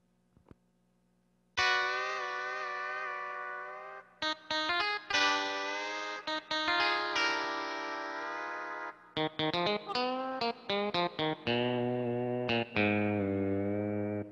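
Lowrey electronic home organ played: after a second and a half of quiet, held chords, then a run of short detached notes, with a low bass part coming in near the end.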